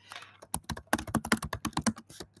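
Typing on a computer keyboard: a quick, irregular run of key clicks starting about half a second in.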